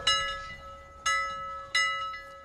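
Bell-like chime struck three times, roughly once a second, each stroke ringing out and fading.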